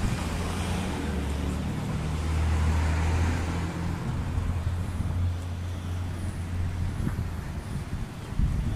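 Street traffic: a motor vehicle's engine running with a low hum, swelling a few seconds in and dropping away about seven seconds in.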